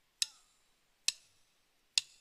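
Drumsticks clicked together three times, evenly just under a second apart: the drummer counting the band in before the song starts.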